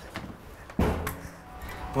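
A single heavy thud a little under a second in, with a short low ring after it.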